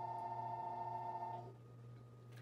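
A telephone ringing: one steady two-tone ring that stops about a second and a half in, over a low steady hum.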